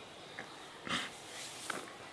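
A man sniffling and breathing unsteadily while crying, with one louder sniff about a second in.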